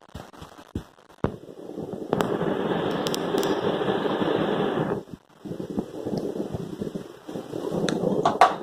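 Crackling, rustling noise of close handling, with a few sharp clicks in the first second; it grows loud about two seconds in, drops out briefly around five seconds, then resumes.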